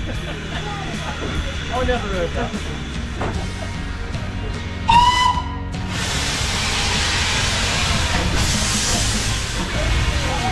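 A narrow-gauge steam locomotive's whistle gives one short blast about halfway through, followed by a steady hiss of steam that carries on to the end.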